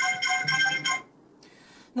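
A phone ringtone playing a tune of short electronic notes, heard down a video-call line, stopping about a second in.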